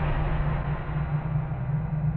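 A low, steady musical drone with a faint hiss over it.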